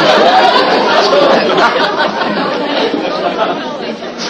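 Studio audience reacting, many voices laughing and chattering at once. It fades toward the end.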